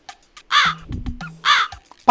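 Two harsh crow-like caws about a second apart, each dropping in pitch, over a faint low steady tone.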